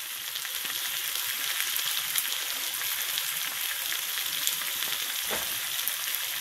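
Flanken-cut beef short ribs sizzling steadily in olive oil in a hot nonstick frying pan, a continuous crackling hiss. A soft low thump sounds about five seconds in.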